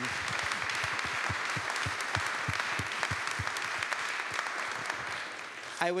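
Audience applauding, many hands clapping steadily and dying away just before the end.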